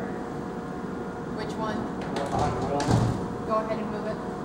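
Indistinct voices talking off-mic in a workshop over a steady machine hum, with a few short knocks or clatter about two to three seconds in.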